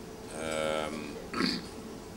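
A man's voice holding a long, level hesitation sound mid-sentence, followed by a short vocal sound about a second and a half in.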